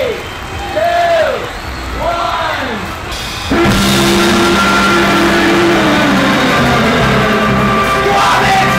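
A rising-and-falling pitched call repeats about once a second, then a live rock band with saxophone and electric guitar comes in loudly and abruptly about three and a half seconds in.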